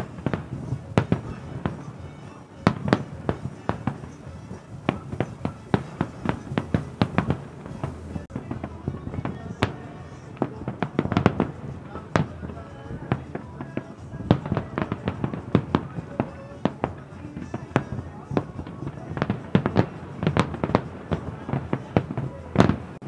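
Fireworks display: a rapid, uneven run of shell bursts and crackling reports, several a second, with heavier clusters of bangs about three, eleven and twenty seconds in.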